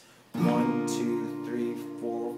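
Acoustic guitar with a capo on the third fret: a chord is strummed about a third of a second in and left ringing, with lighter strums after.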